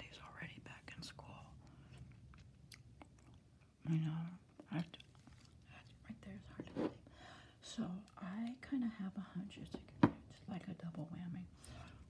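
A person chewing gum close to the microphone: irregular wet smacks and clicks of the mouth, with one sharper click about ten seconds in.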